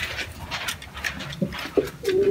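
Caged domestic pigeons: soft breathy rustling with a few faint clicks, and two or three short low calls near the end.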